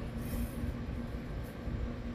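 A steady low mechanical rumble with a faint hum that pulses on and off several times a second.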